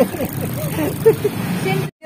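Street noise: a motor vehicle's engine running steadily under faint background talk. The sound cuts out suddenly near the end.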